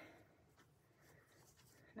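Near silence with faint rustling of a white cloth glove as a hand is worked into it; the glove is too small for the hand to go in.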